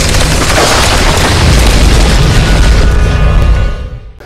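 Logo-intro sound effect: a loud, deep boom and crashing rush over music, dying away near the end.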